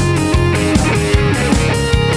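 Live Hungarian mulatós dance band playing: electric guitar and keyboard over a steady drum beat of about two and a half hits a second.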